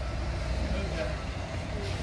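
Street and market ambience: a steady low rumble with faint voices of passers-by.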